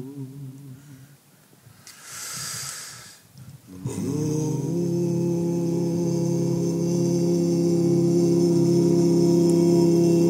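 Men's a cappella group singing a wordless hummed chord: the held chord fades out in the first second, a short breathy hiss follows about two seconds in, and about four seconds in a new chord swells in, the voices sliding up into pitch and then holding steady.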